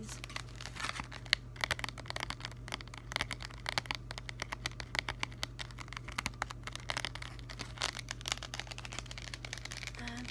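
Fingernails tapping and scratching on the clear plastic packaging of a pack of gel pens, with the plastic crinkling: quick, irregular clicks throughout.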